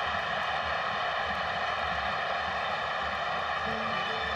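Football stadium crowd cheering steadily, celebrating a goal by the home side.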